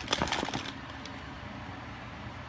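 Plastic markers clicking and clattering against each other as a hand rummages through a bin of them, stopping under a second in. A faint steady hum follows.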